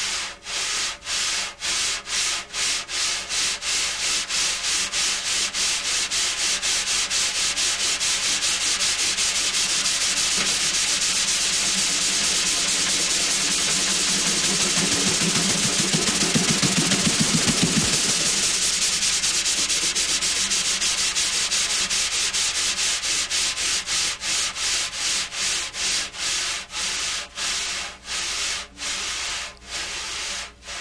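A pair of wire brushes sweeping back and forth across a Remo snare drumhead in the 'windshield wiper' stroke. The sweeps start at about two a second, speed up until they blur into one continuous swish in the middle, then slow back down into separate sweeps.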